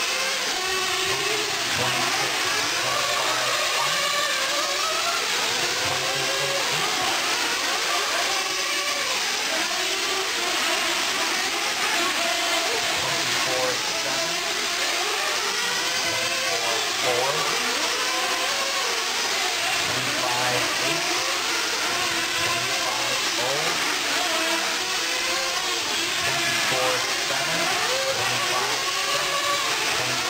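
Several 1/8-scale nitro truggy engines running at once, their high buzzing notes overlapping in a continuous din that keeps rising and falling as they rev up and ease off.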